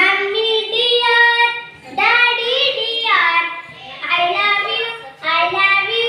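Children singing a rhyme in short phrases, with brief breaks about every two seconds.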